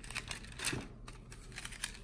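Light taps and paper rustling as a wooden Hoyo de Monterrey Epicure No. 2 cigar box is handled open and its paper liner folded back over the cigars.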